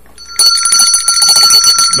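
A bell-like ring, trilling rapidly on several steady high tones. It starts about half a second in and lasts about a second and a half.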